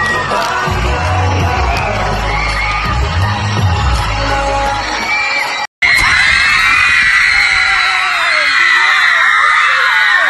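Live pop concert music with a heavy bass beat and an audience screaming over it. It cuts off suddenly a little past halfway, and a crowd of fans screaming at high pitch follows.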